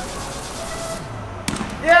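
A small ball dropping into a wire-mesh wastebasket: one sharp tap about one and a half seconds in.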